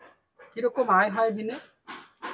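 A woman's voice speaking for about a second, starting half a second in, after a brief quiet.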